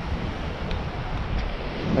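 Wind buffeting the microphone in uneven low gusts over the steady wash of ocean surf breaking on the beach.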